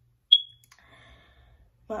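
A single short, high electronic ding from an iPad notification, sharp at the start and fading within about a quarter second, followed by a faint quieter tone.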